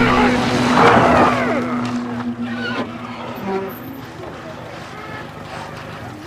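A car or van's engine and tyres on a film soundtrack, mixed with shouting voices. The sound is loudest in the first second and a half, then drops away.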